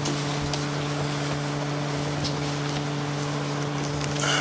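Room tone: a steady low hum with a faint hiss, broken only by a couple of faint ticks.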